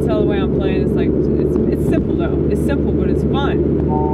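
Steady low rumble of car road and engine noise heard inside the cabin, with a person's voice over it.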